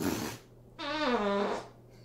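A fart sound: a short, breathy burst, then a buzzy tone of nearly a second that falls in pitch.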